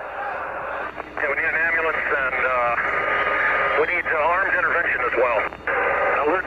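A voice heard over a radio channel, thin and hissy, with no words that can be made out. About a second of radio hiss comes first, then the voice runs on.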